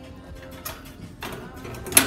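Faint background music with a few soft clicks, then a sharp click right at the end.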